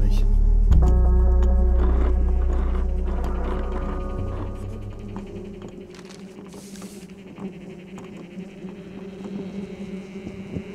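Horror film score: a deep boom about a second in with a held, dissonant chord over it, fading slowly over several seconds into a quiet low drone.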